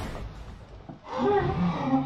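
A person laughing out loud, starting about a second in.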